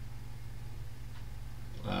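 Steady low hum of room tone, with a man's voice starting a hesitant 'uh' near the end.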